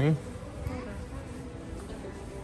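A voice finishes a word at the very start. After that there is steady indoor store background: a constant faint hum with a few faint, distant sounds.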